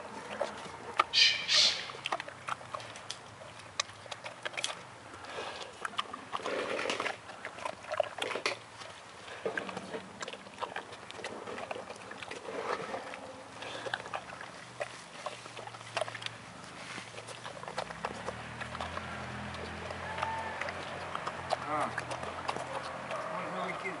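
Brown bear eating a heap of green grapes: a string of wet chewing, smacking and crunching clicks, with one short, loud noisy burst about a second in. Low human voices talk in the background toward the end.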